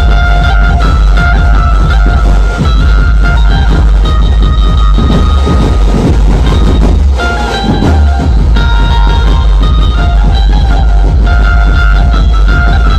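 Loud electronic DJ dance music with a heavy, steady bass, played through a large truck-mounted speaker stack. The melody drops out for a couple of seconds about halfway through while the bass carries on.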